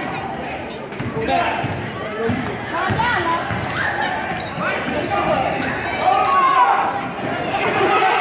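A basketball bouncing on a gym's hardwood floor during game play, with players' and spectators' voices calling out. The sound echoes in the large gym.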